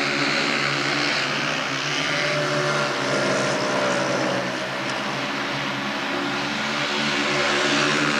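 Speedway motorcycles' 500cc single-cylinder methanol engines running at racing speed as the bikes broadside around the track. One engine note rises and then falls about halfway through.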